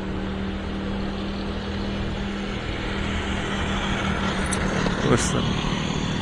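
Motorbike engine running steadily while riding, with road and wind noise and a steady low drone.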